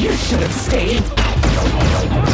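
Action-film battle soundtrack: a musical score mixed with sci-fi weapon fire, crashes and metallic impacts, loud and dense.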